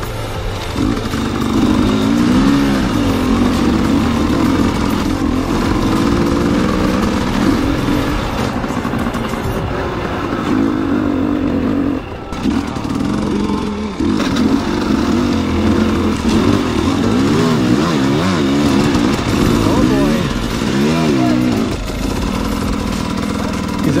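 Dirt bike engine running under a rider on a rough trail, its pitch rising and falling constantly as the throttle is worked, with short breaks about halfway through.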